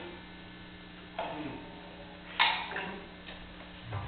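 Steady electrical hum from the band's amplification, with two short struck sounds about a second apart that ring briefly; the first slides down in pitch.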